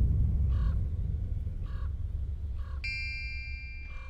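Crows cawing, four short caws about a second apart, over a low rumble that fades. About three seconds in, a bright chime rings on for over a second.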